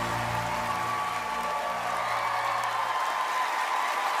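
The last held chord of a slow foxtrot song fading out as a studio audience applauds and cheers.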